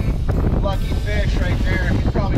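Wind buffeting the microphone on a small open boat at sea, a steady low rumble, with indistinct voices about a second in.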